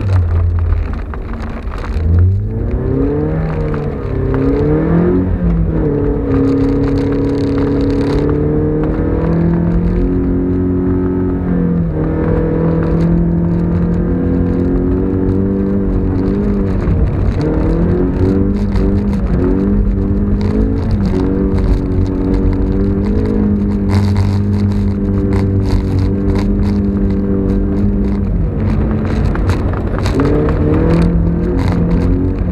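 Mazda MX-5's four-cylinder engine heard from inside the cabin, its revs rising and falling and holding steady for stretches as the car is driven.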